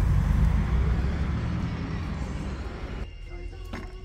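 Low, steady rumble of street traffic that fades slowly, then cuts off suddenly about three seconds in to a much quieter room with a few faint steady tones.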